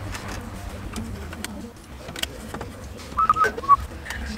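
Scattered clicks and knocks of plastic and metal as a car stereo head unit is worked into the dash trim, over a steady low hum. A few short high chirps come near the end.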